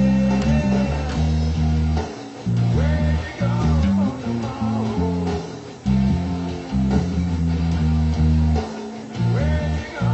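Electric bass guitar plucked in a line of low notes, with brief gaps about two, six and nine seconds in. A fainter higher melody with sliding notes runs over it.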